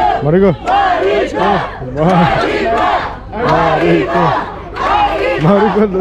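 A group of voices singing together in unison without instrumental backing, in long held notes broken into phrases with short pauses.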